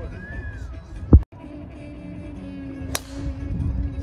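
A golf driver strikes a ball off the tee with a single sharp crack about three seconds in. Just past a second in there is a loud low thump that cuts off abruptly.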